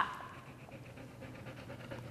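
Golden retriever panting faintly and quickly.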